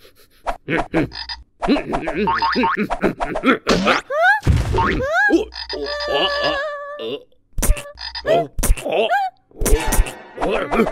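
Cartoon giant frog croaking over and over in short calls that bend in pitch, with one longer, steadier croak about six seconds in. A few sharp knocks come near the end.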